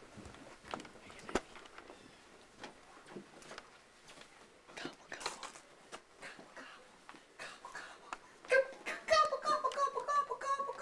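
Soft footsteps and small knocks in a quiet house, with faint whispering. About eight and a half seconds in, a man's voice starts up with long, held, pitched sounds.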